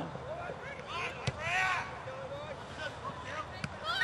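Faint calls and shouts of voices from the ground, with a single sharp knock about a second in.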